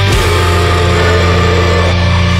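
Death metal / deathcore band playing: heavily distorted, low-tuned electric guitars and bass hold a low chord under dense drumming, loud and steady.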